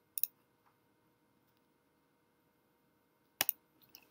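Quick double click of a computer mouse just after the start, then another double click near the end, over faint room tone: clicks setting the end points of a wall being drawn.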